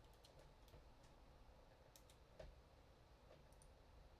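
Near silence: room tone with a few faint, scattered clicks from a computer keyboard and mouse, one a little louder about two and a half seconds in.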